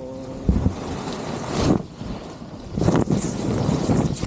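Wind buffeting the microphone, mixed with a paraglider wing's fabric rushing and rustling as the deflating canopy settles over the camera. It comes in uneven surges, loudest about half a second in, just before two seconds and through the last second.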